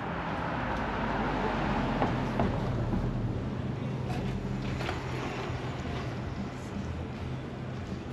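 Road traffic: a vehicle passing on the road alongside, its tyre and engine noise swelling about two seconds in and slowly fading, with a low steady engine hum.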